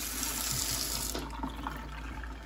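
Pull-down kitchen faucet running a thin stream of water into the sink, with a steady hiss that trails off to a trickle about a second in.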